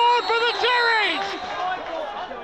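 A football commentator's excited shouting, with long drawn-out calls as a goal is scored, dying down near the end.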